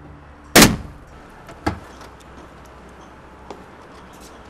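A single pistol shot fired into a door lock, loud and sharp with a short ringing tail, about half a second in. A second, quieter bang follows about a second later, and a faint click comes near the end.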